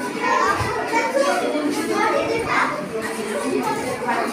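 Many children talking and calling out at once: the busy hubbub of a room full of children.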